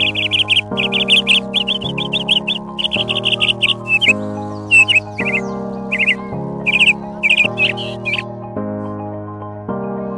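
Background music with slow, steady chords, over which a bird chirps in quick high trills and then separate short downward-sliding notes, stopping a little before the end.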